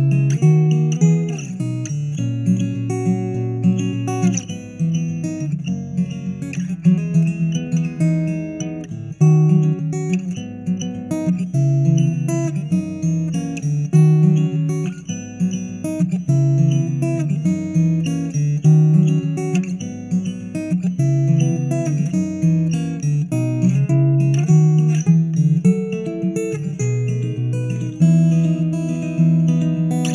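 Taylor 914ce steel-string acoustic guitar played fingerstyle through its pickup and an AER acoustic amplifier: a continuous flow of picked bass notes under a melody line.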